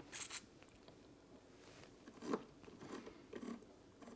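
Faint handling sounds: a few short, soft clicks and rustles, the clearest just after the start and another a little past two seconds, as fingers work a Thermomix's touchscreen and selector dial.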